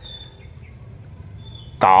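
A pause in a man's talk: a quiet outdoor background with a few faint, short, high-pitched chirps. His voice comes back near the end.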